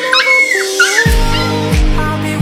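White puppy crying in short, high, wavering whimpers and yelps as its injured foreleg is handled for a fracture splint, over background music; a deep, steady drum beat comes in about halfway through.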